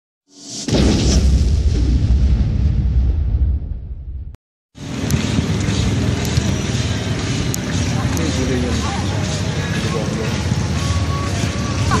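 A deep boom-like intro sting that swells and fades over about three and a half seconds. After a brief cut to silence comes steady wind noise on the microphone, with faint distant shouts and a few faint sharp knocks.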